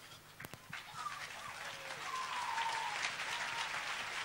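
Faint applause from a gathered crowd, a few scattered claps at first, then building from about a second in into steady clapping. A faint voice is heard under it.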